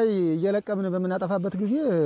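A person speaking continuously in a mid-pitched voice, with only speech to be heard.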